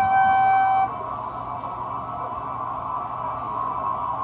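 A flute holds one steady note that stops about a second in, leaving a sustained, quieter drone of layered tones from the flute run through effects pedals.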